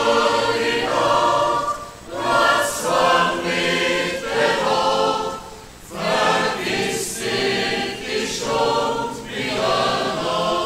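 Mixed choir of men and women singing a folk song in sung phrases, with short breaks between phrases about two seconds and six seconds in.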